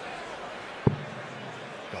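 A steel-tip dart thudding once into the bristle dartboard about a second in, over a steady crowd murmur in the arena.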